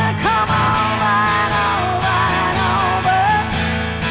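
A woman singing long, wavering held notes over a strummed acoustic guitar in a live rock performance.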